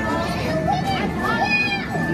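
Busy arcade din: children's voices and arcade game sounds over a steady background, with a voice-like pitched sound rising and falling through the middle and a thin steady high tone running under it.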